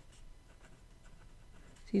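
A pen writing a short entry on planner paper, faint. Speech starts at the very end.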